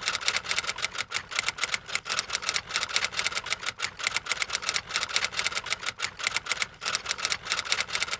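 Rapid, irregular clicking of typewriter keys, several strikes a second, a sound effect laid under animated title text.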